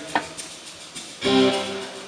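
A chord strummed once on an acoustic guitar about a second in, ringing and fading, after a short click near the start.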